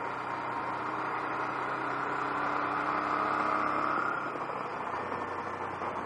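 Honda NT700V motorcycle's V-twin engine running at road speed under wind and road noise. It swells a little louder for a couple of seconds, then eases back about four seconds in.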